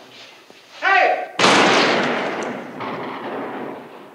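Film soundtrack played over a hall's speakers: a brief shout about a second in, then a loud gunshot that dies away over a couple of seconds.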